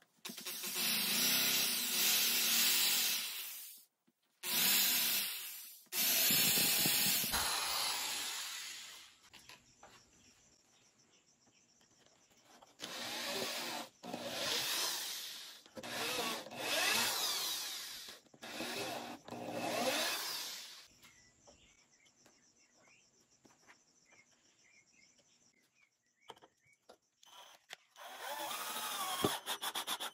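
Cordless drills boring pilot holes into pine slats, in repeated bursts: three long runs in the first nine seconds, then about five shorter ones, each ending as the motor winds down. Near the end a drill runs again, driving a screw into the wood.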